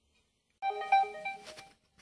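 A short electronic jingle of several clean, steady notes, starting about half a second in and fading out within about a second.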